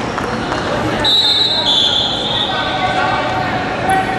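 Referee's whistle blown in two long, high blasts, the second slightly lower in pitch, over the noise of voices in a large sports hall.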